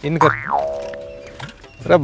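Cartoon-style comedy sound effect: a quick sweep up in pitch and straight back down, then a steady ringing note that fades away over about a second.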